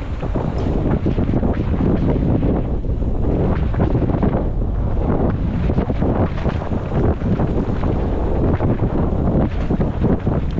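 Wind rushing over a helmet-mounted camera's microphone on a fast downhill mountain-bike run, mixed with tyres crunching over a dirt trail and the bike rattling.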